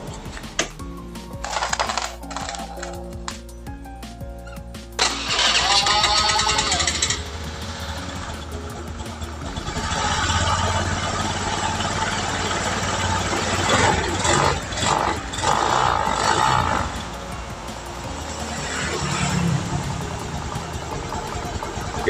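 Honda Beat carburettor scooter's single-cylinder four-stroke engine started and run on the centre stand, revved with the rear wheel spinning through the freshly reassembled CVT. It runs smooth, without the rough CVT noise caused by worn rollers, roller housing and boss.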